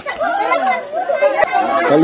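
People's voices talking, with no other sound standing out.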